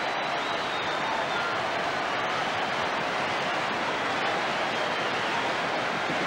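Large football crowd cheering a home goal, a steady wall of noise from the terraces.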